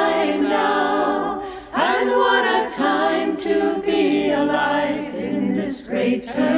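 A group of voices singing a hymn unaccompanied, phrase after phrase, with a short breath about two seconds in.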